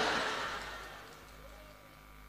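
The last of a man's amplified voice dying away through a public-address loudspeaker system, fading over about a second and a half into a faint steady hum from the sound system.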